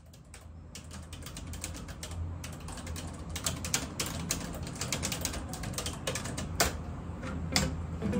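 Computer keyboard being typed on: quick, irregular key clacks, with a couple of sharper clicks near the end, over a low steady hum.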